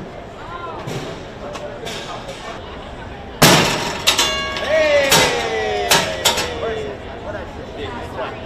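A mallet strikes a carnival high-striker strength tester with a sharp, loud whack about three and a half seconds in. It is followed by ringing tones, slowly falling tones and a few more knocks over the next few seconds.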